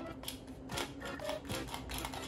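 Light, irregular plastic clicks and taps, several a second, from handling a miniature Sylvanian Families toy washing machine.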